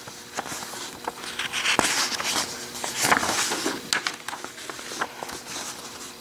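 Paper pages of a printed brochure rustling and crackling as they are handled and turned by hand, with a few sharp clicks and crinkles.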